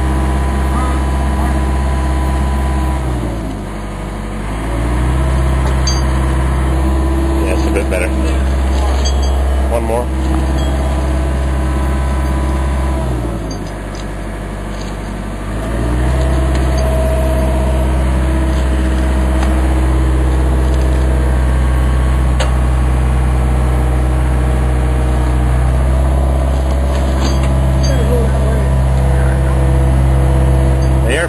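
Diesel engine of a John Deere digger running steadily while it holds a chained concrete block. Its revs sag twice, a few seconds in and again about halfway, then pick back up.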